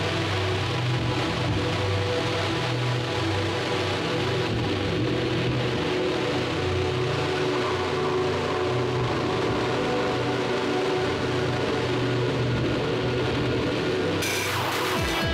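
Electronic music: a steady, sustained droning chord over a layer of hiss, with no beat.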